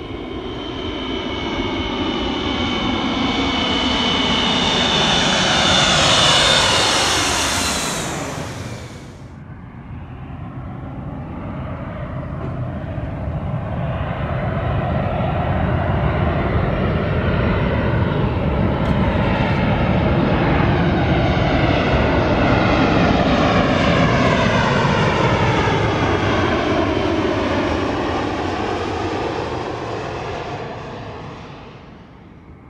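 A twin-engine widebody jet airliner passing low overhead on approach, its high fan whine sliding down in pitch as it goes by, breaking off abruptly about nine seconds in. Then a Boeing 737 on approach: a steady jet engine rumble that swells, holds, and fades near the end.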